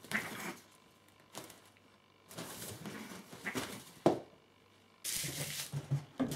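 Fabric rustling and light knocks from a cat pushing its way into a small pop-up play tent, coming in short patches, with one sharp click about four seconds in.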